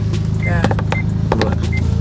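Steady low hum of a car idling, heard inside the cabin, with a few light clicks as a dashboard vent phone holder is handled.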